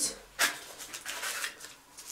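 Small cardboard firework packaging being opened and handled: one sharp scrape about half a second in, then softer rustling that dies away before the end.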